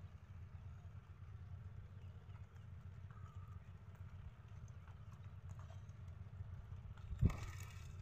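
Handling noise from a cast net holding fish being worked loose on grass, over a low steady rumble. There is one sharp thump about seven seconds in.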